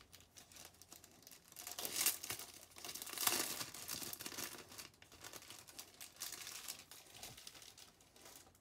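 Irregular crinkling and rustling of something being handled, loudest about two and three seconds in.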